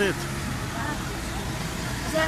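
A taxi driving past on the street, a steady rush of engine and tyre noise.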